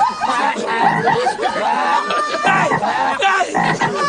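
A man imitating frogs with his voice: a continuous run of short, arching croaking calls, several a second.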